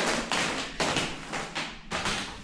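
Cellophane-wrapped flower bouquets being handled on a wooden table: a few light knocks and taps with crinkly plastic rustling.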